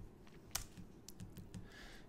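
Faint clicks of a computer keyboard and mouse: one sharper click about half a second in, then several lighter clicks later on.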